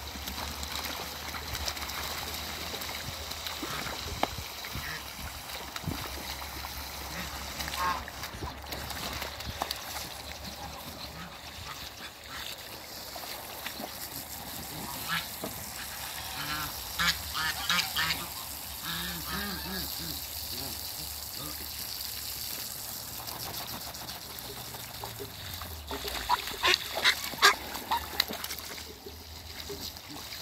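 Ducks in a shallow puddle, with water sounds and short runs of duck calls: a cluster about halfway through and a louder burst near the end.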